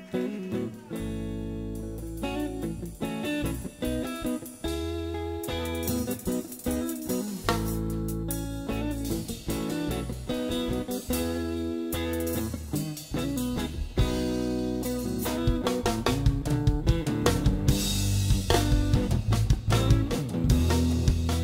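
A live band of electric guitar, electric bass and drum kit starting a tune, with held guitar chords over the bass in short phrases. The drums settle into a steady, louder beat in the last few seconds.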